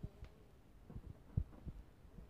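A few soft, irregular low thumps and knocks of handling, the loudest about one and a half seconds in, as a plastic Easter egg is fiddled with and twisted open.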